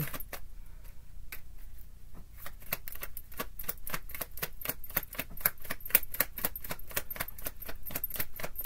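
Tarot deck being shuffled by hand: a run of quick card clicks, sparse for the first couple of seconds, then dense and fairly even at several a second.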